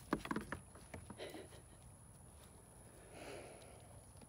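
A young goat's hooves knock on a wooden pallet ramp several times in quick succession as it steps up, then a soft rustle near the end as it noses at hay on the boards.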